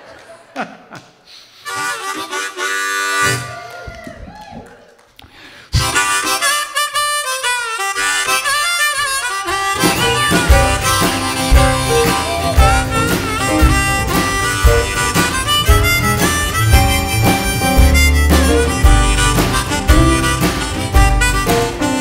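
Harmonica and acoustic guitar playing a folk-country song intro, sparse at first. About ten seconds in, a full band with drums and upright bass joins in.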